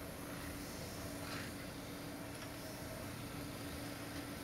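Old metal lathe running with a steady hum as a hand-held turning tool is held against a spinning steel roller, with a brief scraping hiss about a second in.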